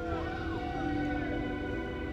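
Background music: sustained ambient synth chords with short swooping pitch glides over them.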